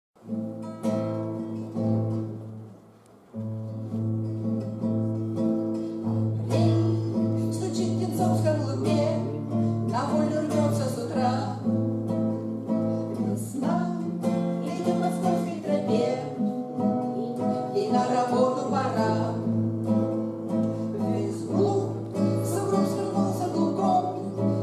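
Acoustic guitar playing the strummed chord introduction to a bard song, breaking off briefly about two seconds in before the strumming resumes.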